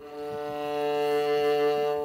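A viola playing a single bowed D on the C string, stopped with the first finger: one long, steady note that swells in over the first half second and is then held.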